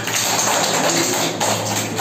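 Hands clapping in applause, a dense even patter that lasts about two seconds and stops as speech resumes.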